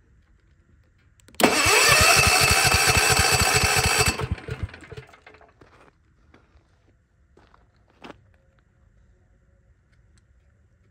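Generac portable generator's electric starter cranking the engine for about three seconds, a whine rising as it spins up over evenly paced compression pulses, then winding down and stopping without the engine catching. A single short click follows a few seconds later.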